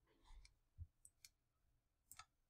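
Near silence with a few faint clicks from a computer mouse as the page is scrolled.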